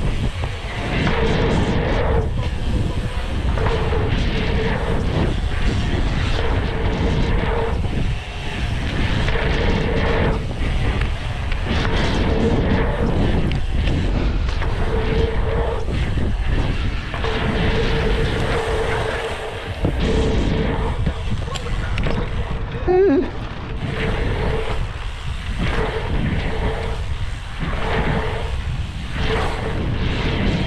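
Wind rushing over the camera microphone and mountain-bike tyres rolling on a packed-dirt jump line as the bike rides the trail, with a buzzing tone that comes and goes every second or so.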